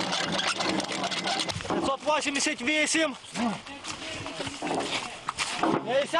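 Men's raised voices calling out over a dense background of noise and clatter as an artillery crew readies its howitzer to fire.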